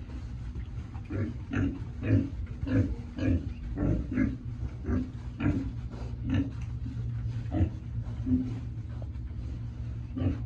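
Pigs grunting over and over, short grunts coming about once or twice a second, as they are steered around the pen with a brush.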